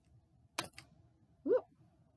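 A light, sharp click as the small toy hanging from a homemade plastic parachute lands on the tabletop, followed about a second later by a short rising vocal sound.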